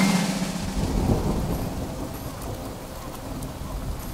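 Thunder rumbling over steady rain, starting suddenly and slowly fading over a few seconds, with no music playing.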